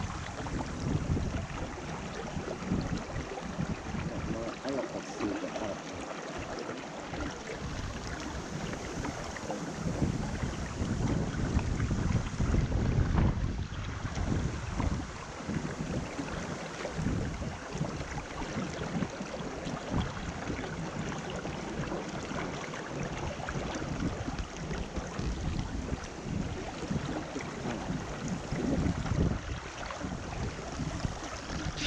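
Shallow river water flowing and rippling, with wind buffeting the microphone in uneven low gusts.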